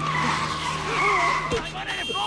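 A long skidding screech under shouting voices, broken by a sharp knock about one and a half seconds in.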